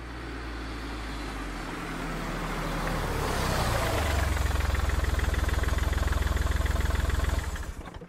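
Car engine sound effect: engine noise swells over the first few seconds, then settles into a fast, even low rumble that fades out shortly before the end.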